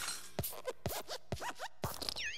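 Animated desk lamp (Luxo Jr.) hopping, with sound effects of about four springy thuds roughly half a second apart. Each thud comes with a squeaky metal-spring creak.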